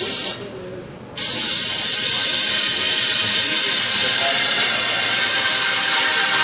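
Loud hissing white-noise effect in an electronic dance track played over the hall's sound system. It cuts out abruptly near the start, snaps back in about a second in, and then holds steady.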